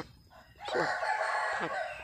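A rooster crowing once: one long call of about a second, starting just over half a second in.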